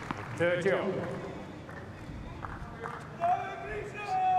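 Tennis ball struck by racquets during a rally on a hard court: a sharp hit at the start, then fainter hits and bounces about two and three seconds in, with short high-pitched squeaks between them.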